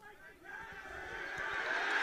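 Stadium crowd noise swelling steadily from near quiet, many voices rising together as a conversion kick travels toward the posts.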